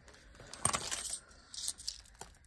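Loose coins clinking and jingling as a handful of change is picked up to be counted: one sharp clink about two-thirds of a second in, then a lighter jingle near the end.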